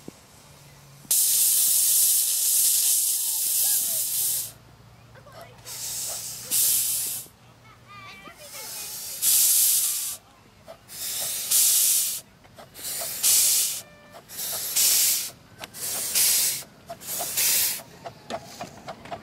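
Miniature GCR 8K-class 2-8-0 steam locomotive starting away with its train. A long blast of steam hiss lasts about three seconds, then strong chuffs follow with the cylinder drain cocks blowing, coming gradually quicker as it picks up speed.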